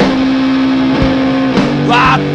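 Loud rock music: electric guitar holding long sustained notes over drums, with a couple of sharp drum hits about halfway through.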